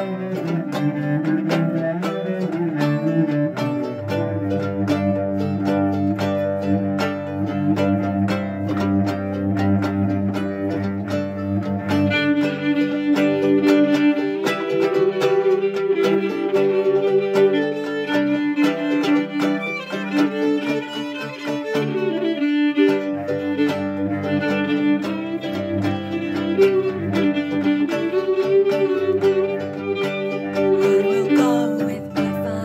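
Instrumental folk interlude: a bowed cello playing sustained notes under a plucked string instrument. The tune rises higher about twelve seconds in, with a brief pause about two-thirds of the way through.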